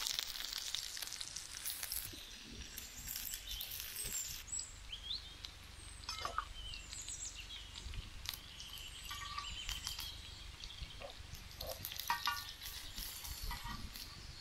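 Chapathi-wrapped banana rolls frying in a little oil on a large iron tawa, with a steady sizzle that is loudest in the first few seconds. Metal tongs and a spatula click now and then against the pan.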